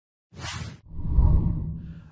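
Logo-intro sound effect: a short whoosh, then a deep rumbling boom that swells and fades away.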